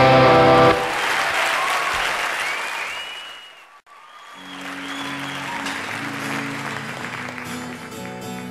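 A loud full-band rock song ends abruptly on its last chord under a second in, giving way to a studio audience applauding and whistling. The applause fades out, returns, and low held instrument notes start under it.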